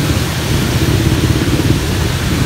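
Steady rain falling on a wet street, with a continuous low rumble underneath.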